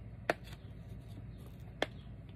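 Two light clicks, about a second and a half apart, as small craft supplies such as an ink pad are handled and set down on a tabletop, over a faint steady hum.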